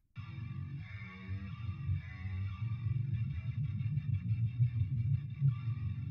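Heavy distorted metal rhythm guitars from the MLC SubZero amp simulator, played back through the guitar bus with Soothe2 dynamically taming rumble and harshness. The playback is fairly quiet, with most of its weight in the low end.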